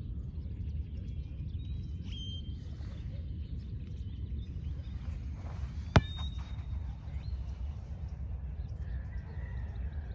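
A single sharp kick of an Adidas Tango España 82 replica football about six seconds in, over a steady low background rumble and a few faint bird chirps.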